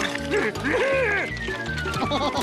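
Cartoon soundtrack: music over a rapid ratchet-like clicking clatter from a swarm of crab-like creatures scuttling. A whistle-like tone glides down in the second half.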